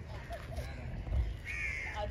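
A crow cawing once: a single harsh call about half a second long near the end.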